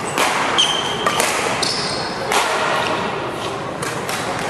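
Badminton rackets hitting a shuttlecock in a rally, several sharp smacks about a second apart that ring in the hall, with short high squeaks of court shoes on the floor between hits.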